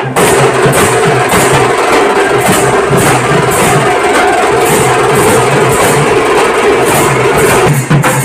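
Loud procession music: drums beating a steady rhythm under a held, droning tone. Near the end the drone stops and the drum hits come to the front.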